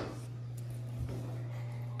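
A steady low hum with a single soft knock about a second in, as of light handling at a kitchen stove.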